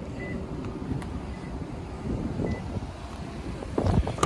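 Wind buffeting the microphone as a low, steady rumble with a few faint ticks. Near the end come sharp clicks as a car's rear door handle is pulled.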